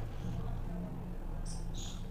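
Steady low hum of background room noise, with two short, faint high-pitched chirps near the end.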